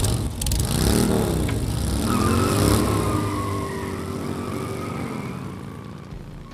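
Motorcycle engines revving hard, rising and falling in pitch about a second in and again from about two seconds, as the bikes spin their rear tyres in a smoky burnout; the sound fades toward the end.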